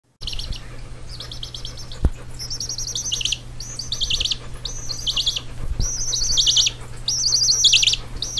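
Baby chicken chick peeping: bursts of rapid, falling high peeps about once a second, over a low steady hum, with a sharp click about two seconds in.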